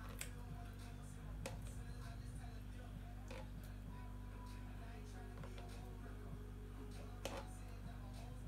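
Faint spoon knocks and scrapes against a plastic jug as yogurt is spooned in, a few soft clicks over a steady low hum.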